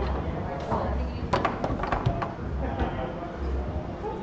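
Foosball table in play: a quick run of sharp clacks about a second in, as the ball is struck by the plastic figures and knocks against the table, over background chatter.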